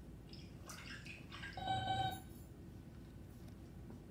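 Electronic beeps and bloops of a cartoon robot's voice, played back through classroom speakers and picked up faintly by the room. The loudest is a short run of steady tones a little under two seconds in.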